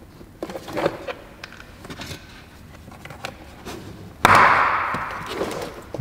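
Handling noise from a plastic car door panel and its wiring: small plastic clicks, then about four seconds in a sudden loud scraping rustle that fades over a second or so.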